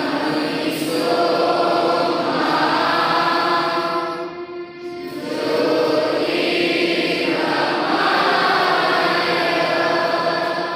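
School assembly choir, a group of voices singing a song in unison, in two long phrases with a brief dip for breath about halfway through.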